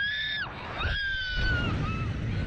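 A Slingshot ride passenger screaming twice: a short high scream, then a longer one held for nearly a second, over a low rumble.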